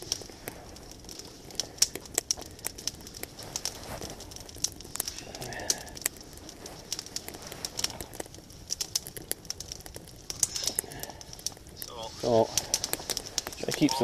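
Small campfire of dry kindling crackling, a steady scatter of sharp clicks, with sticks of split kindling being handled and laid on the fire.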